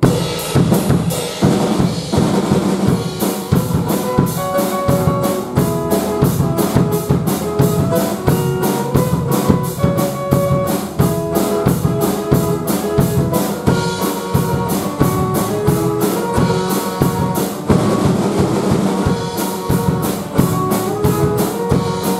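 Live band playing an instrumental passage: drum kit keeping a steady, busy beat under electric bass and acoustic guitar. The band comes in all at once at the start.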